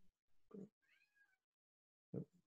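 Near silence, broken about a second in by a faint, brief high-pitched call whose pitch arches and falls.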